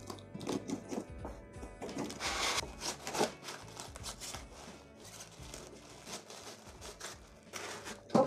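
Cardboard box and plastic wrapping rustling and crinkling as a wall hanging is pulled out and unwrapped, loudest about two to three seconds in. Soft background music plays underneath.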